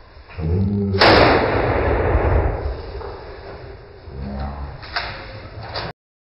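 A single shot from a .38 caliber handgun fired point-blank into a bulletproof leather jacket, one sharp report about a second in followed by a couple of seconds of noise dying away.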